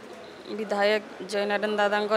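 A woman speaking, starting about half a second in after a short pause, with some drawn-out, level-pitched syllables.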